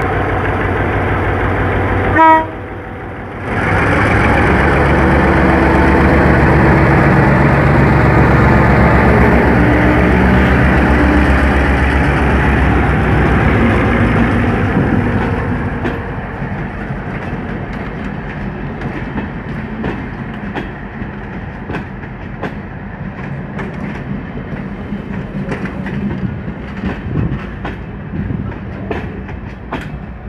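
G22 diesel-electric locomotive sounds a short horn toot from standstill, then its two-stroke EMD diesel engine works hard as it pulls the train away, loud for about ten seconds as it passes and fading by about 15 seconds in. After that the passenger coaches roll by with steady wheel clicks over the rail joints.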